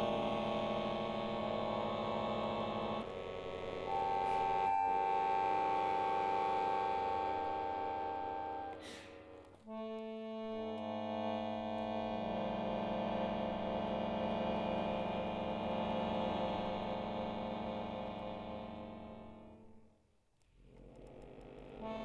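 Solo piano accordion playing sustained, dissonant chords in a contemporary concert piece. The chord changes about three seconds in, and a single high note is held over it for a few seconds. After a short break near the middle, a new chord sounds and then fades almost to silence near the end before the next one begins.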